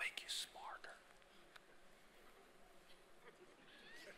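Near silence with room tone in a hall. It opens with a brief whisper with a hissing 's' about half a second long, and faint low voices come in near the end.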